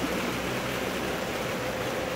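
Steady rain falling, an even hiss with no distinct drops.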